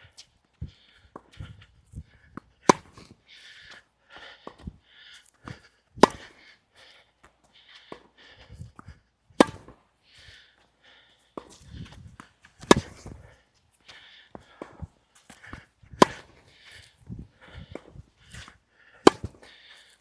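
Tennis ball struck by a racquet strung with Tourna Big Hitter Silver 7 Tour polyester string at 50 pounds, in a steady baseline rally: six sharp hits, one about every three seconds, with fainter knocks between them.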